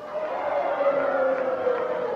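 One long drawn-out call from a single voice, held on one note that slowly falls in pitch, over a steady haze of arena crowd noise.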